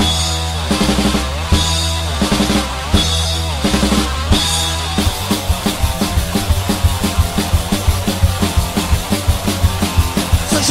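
Hardcore punk band opening a song: about five seconds of held low chords punctuated by crashing drum accents, then the drums break into a fast beat.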